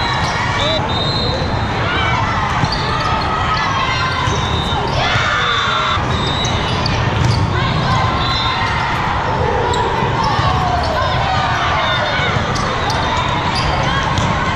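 Echoing din of a large hall full of indoor volleyball games: players calling and shouting, with scattered sharp thuds of balls being struck and bouncing, over a steady crowd murmur.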